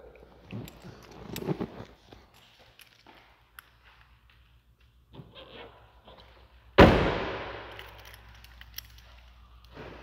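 Car door of a Chevrolet Camaro ZL1 convertible shut with one loud slam about seven seconds in, dying away with a short echo in the room. Before it, faint rustling and small knocks.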